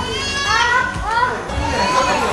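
Indistinct chatter of a room full of people, with children's high voices rising and falling in pitch, strongest in the first second.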